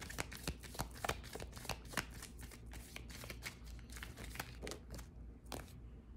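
Small divination cards being shuffled and handled by hand: a run of irregular light clicks and crinkly rustles.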